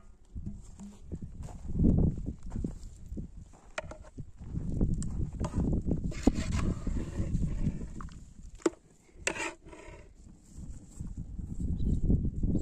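Metal clinks of an aluminium pot lid and a metal ladle against an aluminium pot as soft butter is scooped out, a handful of separate sharp knocks, over a louder low rumbling background.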